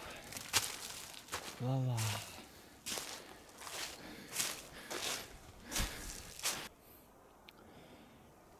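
Footsteps crunching over frozen leaf litter and dry twigs, about one step every second or less, stopping about seven seconds in. A man gives a short "oh" about two seconds in.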